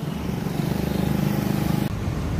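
A small motorbike engine running steadily close by, a low note with a fast pulse over road noise; it cuts off abruptly just before the end.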